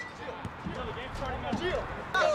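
Soccer players' voices calling out across the pitch, several short shouts overlapping, with a few dull thumps of the ball being kicked on artificial turf.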